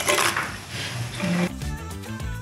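Fried banana slices tipped from a metal pan into a wooden mortar, a brief clatter and rustle at the start. Background music comes in about a second and a half in.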